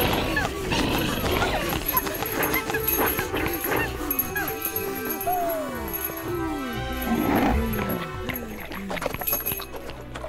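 Cartoon soundtrack: background music with characters' vocal noises and a run of short descending pitched sound effects in the middle.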